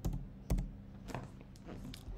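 Keystrokes on a computer keyboard: a few separate taps spread across the moment, with no rapid run of typing.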